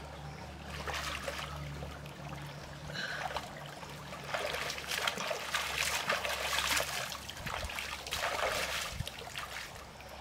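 A person washing in a shallow stream, scooping and splashing water with the hands in repeated bursts, loudest around the middle, with the trickle of the stream beneath.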